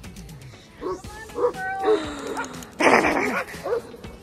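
Several dogs barking and yipping as they play, with the loudest, rougher bark about three seconds in; music plays underneath.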